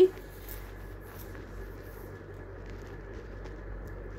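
A lobia chilla sizzling steadily in oil on a hot iron tawa as it crisps, with a few faint scrapes from a steel spatula.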